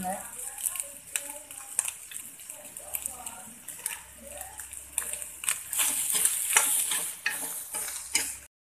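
Steel ladle scraping and stirring red chillies, grated coconut and whole spices as they roast in a pan, with a light sizzle; the scrapes come as quick clicks, busier in the second half.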